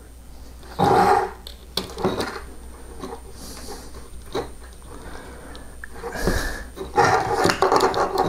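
Small clicks and scrapes of a hex key turning a small screw in a 3D-printer extruder assembly. A short, low, voice-like sound comes about a second in, and another starts near the end.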